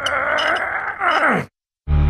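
A man's long straining groan, as if heaving something heavy, sliding down in pitch and trailing off after about a second and a half.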